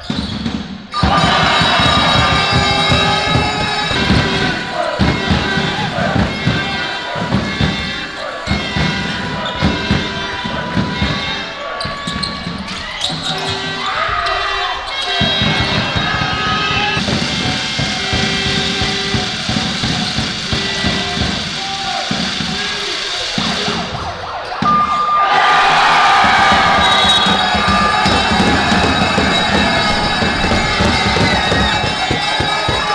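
Basketball game sound in a gym: a ball bouncing on the hardwood court over a steady beat of drums and crowd noise, which grows louder near the end.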